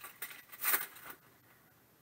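Foil trading-card pack wrapper crinkling as it is handled and the cards are pulled out, in two short rustles within the first second.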